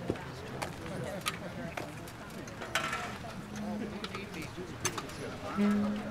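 Faint murmur of voices with scattered clicks and knocks from a concert band settling in between pieces, with a brief low held note near the end.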